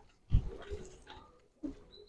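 A dog making short vocal sounds in the background, with a sharp low thump about a third of a second in and a second, smaller one near the end.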